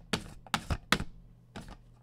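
Typing on a computer keyboard: a quick run of sharp keystroke clicks in the first second, thinning out, with one more click later on.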